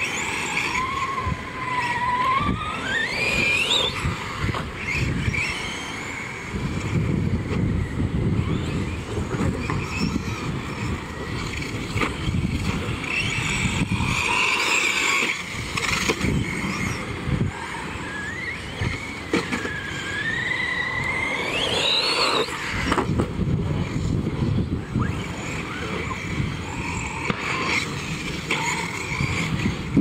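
Electric Tekno short course RC truck running on a dirt track: its motor and drivetrain whine, rising in pitch twice as it accelerates, over the constant scrabble of its tyres on loose dirt.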